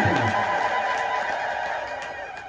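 A man's voice ends a phrase on a falling pitch, followed by a steady ringing hum that slowly fades.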